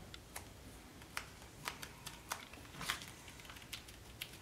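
Fingertips pressing and tapping small glued cardstock pieces down onto a folded card, with paper handling: a handful of faint, irregular taps and clicks.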